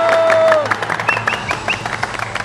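A small group of men clapping quickly and steadily, with a held cheer that ends about half a second in.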